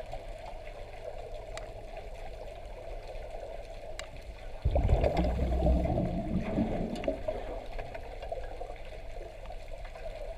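Muffled underwater water noise with a few faint clicks. About halfway through, a louder low rumbling gurgle starts suddenly and fades over a couple of seconds.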